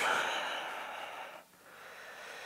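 A man's long breath out, loudest at the start and fading away over about a second and a half, followed by a quieter breath in.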